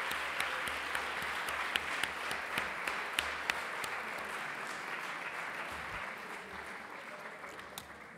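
Audience applauding, the clapping slowly dying away over the seconds.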